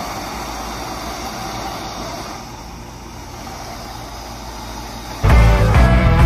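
A steady rushing noise with a low hum underneath, thinning a little about two seconds in. Near the end, background music cuts in suddenly and loudly.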